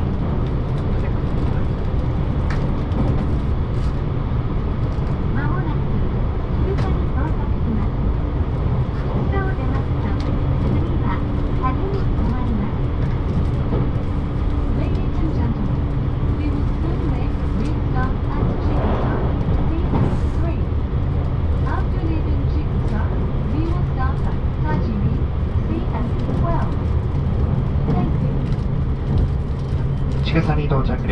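Running noise of a moving electric passenger train heard from inside the car: a steady rumble of wheels on rail, with a steady hum underneath.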